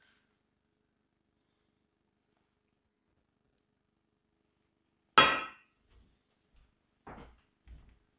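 A metal spoon dropped into a stainless steel mixing bowl: one loud, sharp clank with a brief ring about five seconds in, followed by a few faint knocks.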